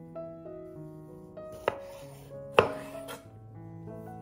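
Chef's knife cutting small tomatoes on a wooden cutting board: two sharp knocks of the blade on the board, a little under a second apart, the second the louder with a brief slicing rasp after it, then a lighter tap.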